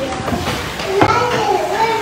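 Young children's voices talking and calling out, indistinct.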